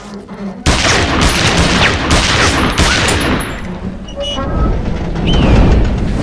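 Heavy, rapid gunfire with booms, bursting in suddenly about half a second in and going on loud and dense.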